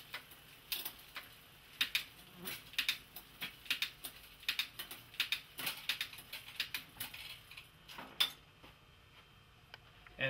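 A bicycle drivetrain turned by hand while shifting through the rear gears: a run of sharp, irregular clicks as the shifter indexes and the chain moves across the cassette cogs, stopping about eight seconds in. The rear derailleur has just been adjusted so that each shift goes nice and smooth.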